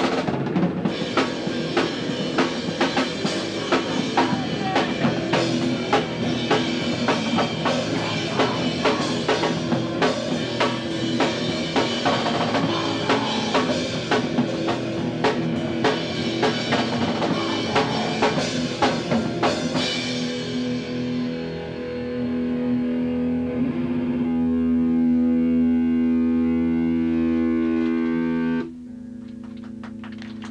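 Live hardcore/punk band playing loud: drum kit pounding under distorted electric guitars. About twenty seconds in the drums stop and the guitars ring on in a held chord that swells louder, then cut off abruptly near the end.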